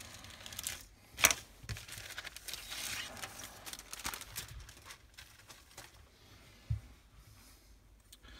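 Clear plastic polybag crinkling and rustling as it is slit open and pulled off a plastic model kit sprue, with a sharp crackle about a second in.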